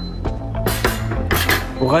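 Two short clattering scrapes of a frying pan and spatula as the cooked risotto is taken off the heat and the pan is set down, over steady background music.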